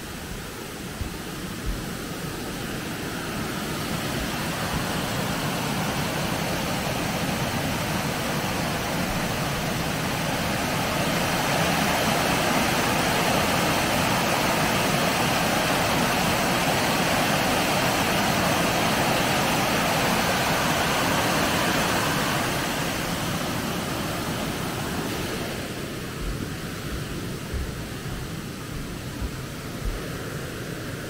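Water rushing over a curved weir in a steady rush that swells as it gets nearer, is loudest through the middle and fades near the end. A few soft low thumps come near the start and near the end.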